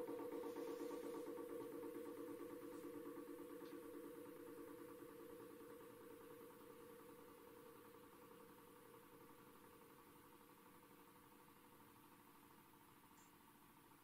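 A low steady hum of several pitches fading slowly to near silence.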